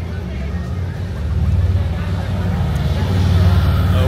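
A loud, steady low rumble that grows louder about a second and a half in, with faint voices behind it.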